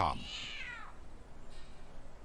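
A cat meowing: one drawn-out meow lasting just under a second, rising in pitch and then falling away.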